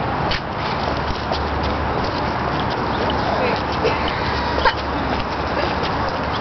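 Steady outdoor background noise with a low rumble, with faint, distant voices of people now and then.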